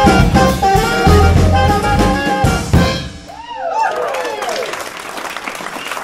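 A live jazz band plays the closing bars of a song and stops about halfway through. The band music gives way to scattered whoops and cheers from the audience.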